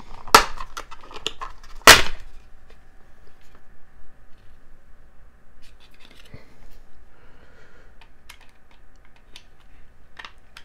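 Plastic enclosure of a portable hard drive being pried apart: two sharp snaps as its clips give way, the second, about two seconds in, louder, followed by light clicks of plastic being handled.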